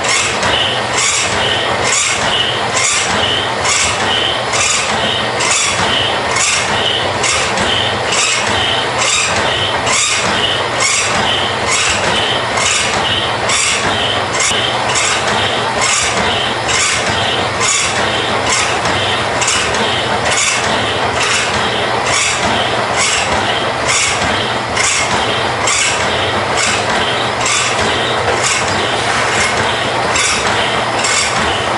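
A Marvel power hacksaw and a Harbor Freight metal-cutting bandsaw both running, cutting half-inch stainless steel bar dry, without lubrication. The hacksaw blade's strokes make an even, repeating metallic scrape, about one and a half a second, over the bandsaw's steady running.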